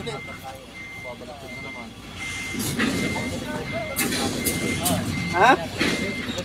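A tractor-trailer truck's reversing alarm beeping at a steady pace, about three beeps every two seconds, over the rumble of the truck's engine, which grows louder about two seconds in as the rig backs up.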